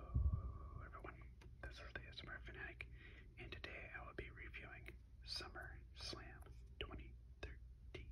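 Close, soft whispered speech into the microphone. A low thump comes just after the start.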